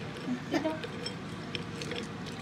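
A few light clinks of ice cubes settling in a plastic blender jar.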